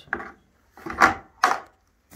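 A bucket set down and shifted on a barn floor: a short scrape, then two louder scraping bumps about half a second apart.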